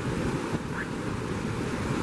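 Steady rush of a fast mountain creek, whitewater tumbling over rocks.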